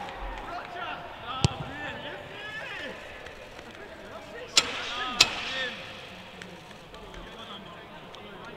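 Footballers' voices shouting and calling to each other on the pitch, with no crowd noise, and three sharp smacks about one and a half, four and a half and five seconds in.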